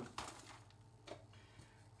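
Near silence: quiet room tone with a faint low hum, a soft click just after the start and a fainter one about a second in, from coffee bags and a container being handled.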